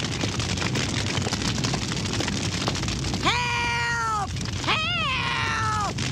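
A cartoon house fire crackling steadily. Over it, an old woman's voice gives two long, high-pitched cries of "Help!" about three and five seconds in, the second wavering at its start.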